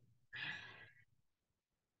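A woman's short audible breath, about half a second long and soft, followed by near silence.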